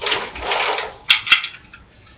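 Ice cubes clattering into a martini glass, with two sharp clinks a little after a second in.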